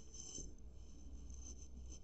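Faint scratching of a pen writing on lined paper.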